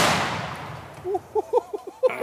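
The boom of an exploding target, set off by a rifle shot, rolling away and fading over about a second. The blast itself hits just before this and only its echoing tail remains.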